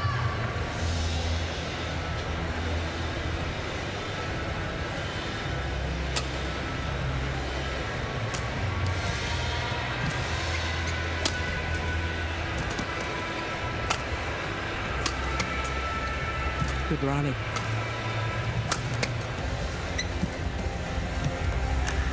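Badminton rally: sharp cracks of rackets striking a feather shuttlecock, about one a second from roughly six seconds in, over the steady murmur and hum of an arena crowd.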